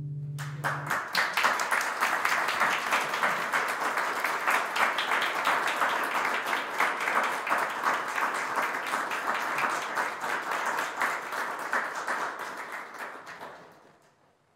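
A held cello note dies away in the first second, then a small audience applauds for about thirteen seconds, tapering off near the end.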